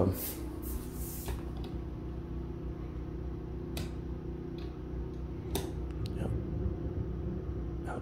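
Steady electrical hum of household appliances running on generator power, with a few sharp clicks of switches or buttons being pressed.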